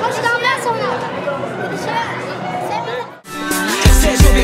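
Several voices talking at once, children's among them. Just after three seconds the voices cut off and music with a steady bass beat starts.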